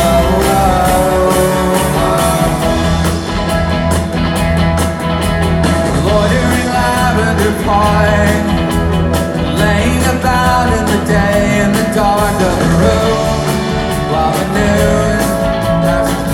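Live rock band playing a song at full volume: electric guitars, bass, drums and keyboards, with a sung vocal line over them.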